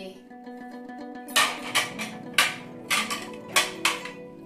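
Background music with plucked strings runs throughout. From about a second in, plates clink against each other several times as they are handled and stacked.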